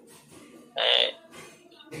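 One short vocal sound from a person, a loud burst about three quarters of a second in, heard through an online call's audio, with a faint hiss around it.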